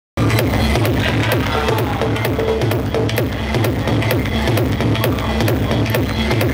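House music from a live DJ set, played loud with a steady dance beat of about two beats a second over a pulsing bass line.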